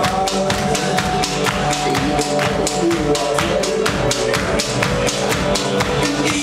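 Live rock band playing an instrumental passage: drum kit keeping a steady beat of about four hits a second under electric guitar and bass.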